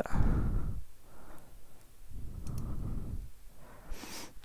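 A man sighing close to the microphone, twice: a short breath out at the start and a longer one about two seconds in.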